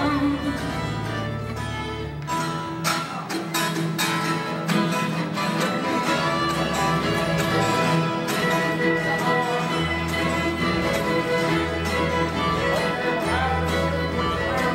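An acoustic string band playing together: strummed acoustic guitars, fiddles, banjo and lap dulcimer in a steady rhythm, with the fiddles carrying the melody over the strumming. Low bass notes alternate from about ten seconds in.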